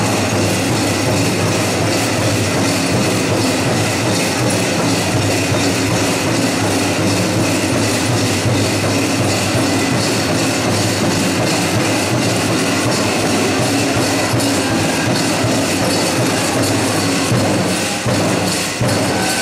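Many jingle dresses' rolled metal cones clinking together as the dancers step, making a dense, steady, shimmering metallic rattle.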